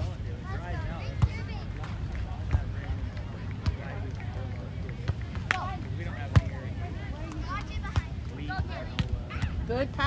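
Beach volleyball struck by players' hands and forearms during a rally: a series of sharp slaps a second or two apart, the loudest about six seconds in, over distant voices.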